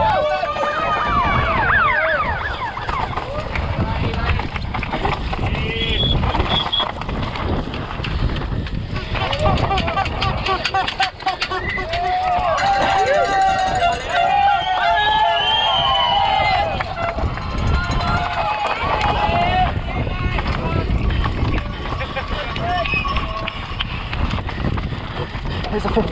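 Spectators lining the trail shouting and cheering at a passing mountain bike rider, loudest near the start and again in the middle. Under the voices, the bike and tyres rattle and clatter over loose rock, with wind on the helmet camera.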